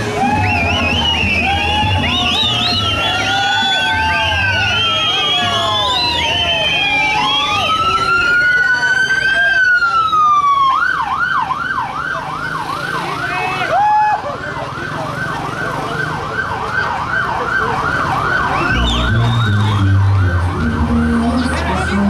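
Vehicle siren: a slow rising and falling wail for several seconds, then about halfway through it switches to a fast yelp of about three to four cycles a second. Music with a low bass line plays under it at the start and again near the end.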